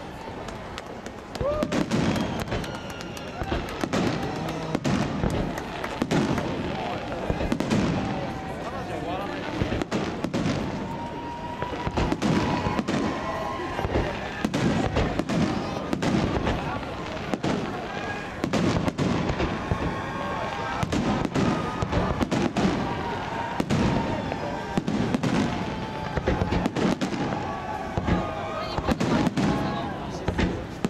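Aerial firework shells bursting one after another, a rapid series of bangs that runs on without a break, with crowd voices underneath.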